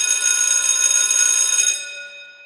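A bell ringing steadily for nearly two seconds, then stopping and dying away.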